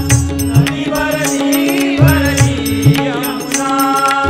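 Live Indian devotional ensemble music. Pakhawaj and tabla strokes keep a steady rhythm under a held harmonium drone, and a voice sings ornamented, wavering notes through the middle.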